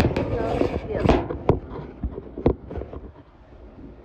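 Flat cardboard pizza boxes and sheets being handled on a stainless steel counter. A rubbing, scraping rush comes about the first second, then several sharp knocks are spread through the rest.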